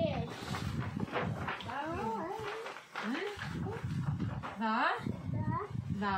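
Speech: voices reading a story aloud in turn.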